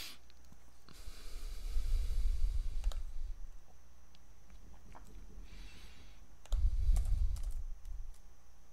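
A few scattered computer keyboard and mouse clicks as a new ticker symbol is typed in, over two stretches of low rumble.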